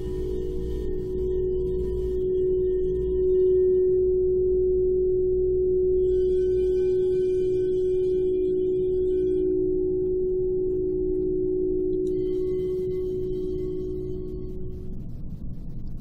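A singing bowl interlude: a long, sustained ringing tone with higher overtones that swell in around six seconds and again around twelve seconds, the whole dying away near the end.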